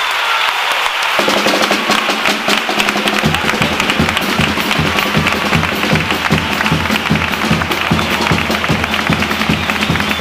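Audience applause, with a carnival chirigota's guitars and bass drum coming in: a held note from about a second in, then a steady drum beat from about three seconds in.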